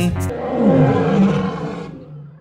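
A lion's roar as a cartoon sound effect. It starts about a quarter second in, as the music cuts off, then fades away near the end.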